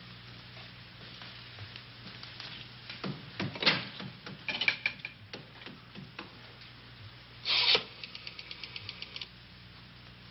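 Knocking and scraping noise. There are scattered sharp knocks, a cluster of them about three to four seconds in, then a louder scrape and a quick run of taps, about ten a second, lasting just over a second.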